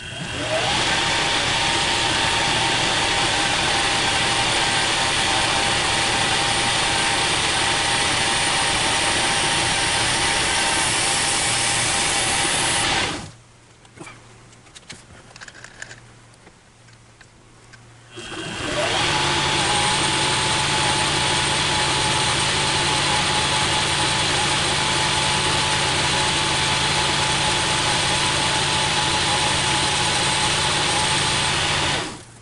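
Metal lathe spinning up with a short rising whine and running steadily while it takes a skim cut on the workpiece. It stops about 13 seconds in, leaving a few faint clicks, then starts again about five seconds later and runs on steadily.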